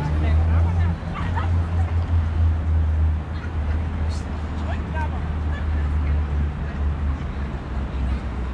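Outdoor city-square ambience: a steady low rumble, with faint voices of passers-by.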